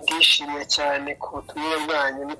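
A person's voice talking in short phrases, continuing from the talk just before.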